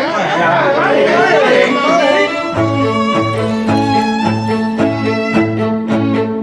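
Bowed-string background music: wavering notes with a strong wobble in pitch for about two seconds, then sustained string chords over a low note pulsing about twice a second.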